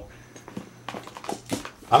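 A few light clicks and taps of hands handling airsoft rifle parts in a foam-lined gun case, in a quiet stretch between words.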